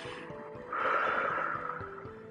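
A woman taking one long, deep audible breath, a hiss that swells a little before a second in and lasts about a second, as a demonstration of deep breathing, over soft background music.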